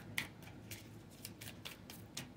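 Faint scattered clicks and light rustles of a tarot deck being handled, a card being put back into the deck.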